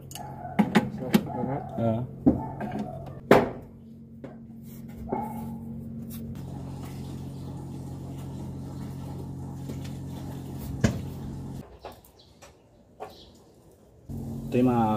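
Steady low machine hum with a few sharp knocks, and brief voice sounds in the first two seconds; the hum drops away about twelve seconds in.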